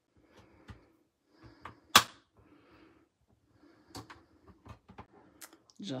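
Soft rustling and scattered light clicks of cardstock being slid into place and small bar magnets being set down on a Stamparatus stamping platform, with one sharp click about two seconds in.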